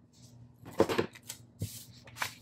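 Scissors and paper being handled on a wooden tabletop: a quick cluster of clicks and a knock a little under a second in, then paper rustling in short strokes.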